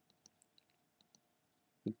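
Several faint, short clicks of a computer mouse as line endpoints are clicked in a drawing program.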